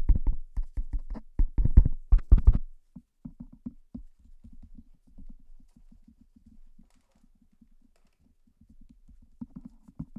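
Fingers tapping rapidly on an Antlion Uni 2 omnidirectional clip-on microphone, picked up by the mic itself as loud, sharp knocks for the first few seconds. Then softer, duller taps on its cable, several a second, come through much more faintly: mic handling noise is heard strongly, cable noise only a little.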